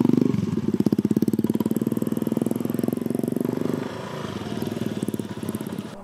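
Small motorcycle engine running past on a dirt track, its even firing pulses loudest at first and fading away over about four seconds as the bike rides off.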